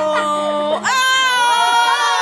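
A person screaming in two long held cries, the second pitched higher and beginning just under a second in, with voices mixed in.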